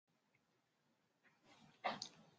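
Near silence, then a short, faint burst of noise just before the end.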